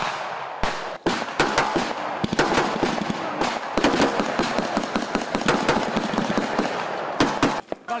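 Rapid, irregular gunfire from rifles and automatic weapons, many shots close together and overlapping. It stops abruptly near the end.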